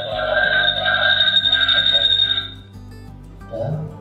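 Acoustic feedback between the phone and the bulb IP camera: the phone plays the camera's live microphone audio right beside it, giving a steady ringing tone at several pitches that stops about two and a half seconds in. Soft background music runs underneath.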